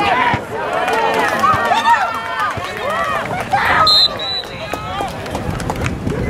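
Several people on a football sideline shouting and cheering over one another during a running play, with a referee's whistle blown briefly about four seconds in.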